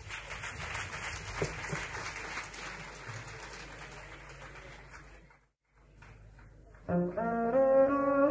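Audience applause with clapping, fading for about five seconds, then a brief dropout in the recording. About seven seconds in, a double bass starts a line of sustained notes stepping upward.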